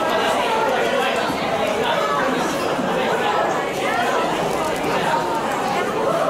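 Overlapping speech and chatter of several people, continuous and busy, with no other distinct sound standing out.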